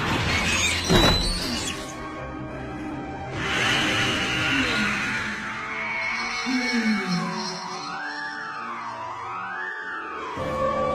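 Dramatic TV soundtrack music with sound effects: a sharp hit about a second in, a swelling whoosh about three seconds in, then wavering tones that rise and fall in pitch.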